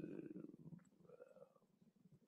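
A faint, drawn-out hesitation sound from a man's voice whose pitch rises and falls, trailing off after about a second and a half into near silence.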